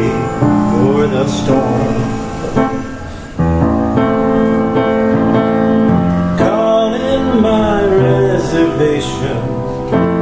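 Upright piano played in full chords, with a man singing the melody over it at times. The sound fades briefly about three seconds in before a new chord is struck.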